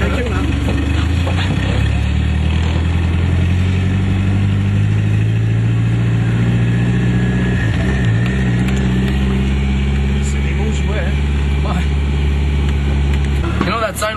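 Nissan Silvia S13 drift car's engine idling steadily, heard from inside the cabin, with a brief waver in pitch about eight seconds in.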